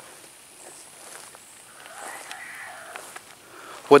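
A ghost box app on a phone gives a faint, garbled burst of sound about two seconds in, lasting about a second. A steady high insect hiss runs underneath.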